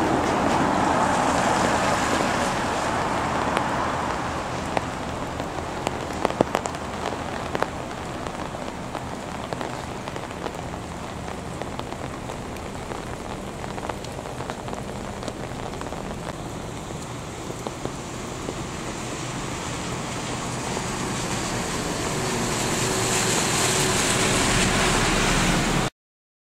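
Rain falling steadily onto a wet street and pavement, a continuous hiss with scattered sharp drop clicks a few seconds in. The hiss swells again near the end.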